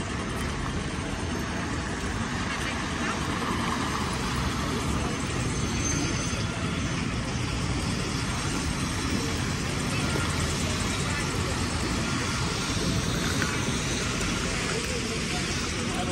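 Steady city traffic noise: cars running on wet roads, an even wash of tyre and engine sound with a low rumble throughout.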